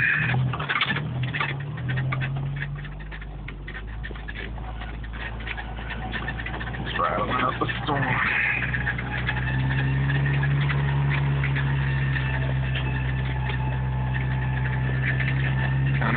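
Jeep Wrangler YJ's engine running at low trail speed, heard from inside the cab, with clicks and rattles over it in the first few seconds. The engine hum grows louder and steadier about nine seconds in.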